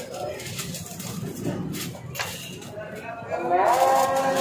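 Held melodic tones fade out at the start, leaving the clatter of a busy food stall with a couple of sharp clicks. About three and a half seconds in, a rising note glides up into steady held tones again.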